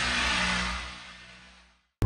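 A produced whoosh sound effect with a low hum underneath, swelling and then fading away to silence near the end.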